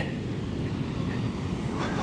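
Steady outdoor beach ambience: a low wind rumble on the microphone with a fainter hiss of distant surf.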